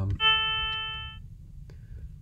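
Additive-synthesis note from a Max/MSP patch: seven sine-wave partials on a 440 Hz fundamental, forming a harmonic overtone series at equal levels. It starts sharply, fades over about a second, then stops.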